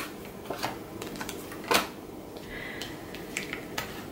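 Tarot cards being handled and laid down on a table: a few light taps and clicks, the clearest a little under two seconds in.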